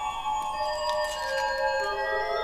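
Church pipe organ playing held chords in a high register, with a lower note coming in near the end.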